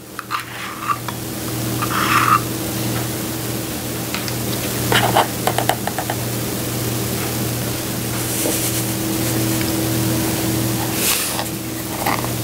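A steady low hum and hiss, with a few light clinks of metal measuring spoons and cups against a tin flour sifter and containers as dry ingredients are spooned in.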